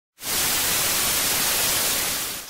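Television static hiss, used as an intro sound effect: a steady, even hiss that starts a moment in.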